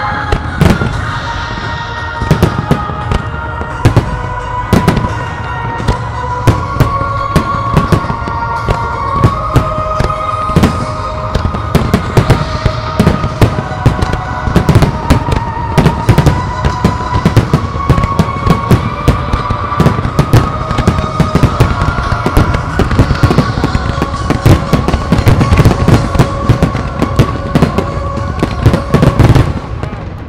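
Aerial fireworks display: a rapid, nearly continuous string of shell bursts and bangs, densest in the last few seconds, over loud music with long held notes.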